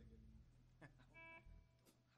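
Near silence in a small room: a faint low electrical hum that drops away about half a second in, a couple of faint clicks, and one short, brief tone just past a second in.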